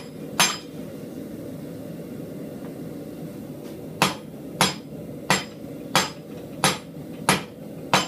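Hand hammer striking the forged animal head held in a leg vise: one blow shortly after the start, then after a pause a steady run of seven ringing blows, about one and a half a second. These are drawing blows shaping the piece's lip and nose.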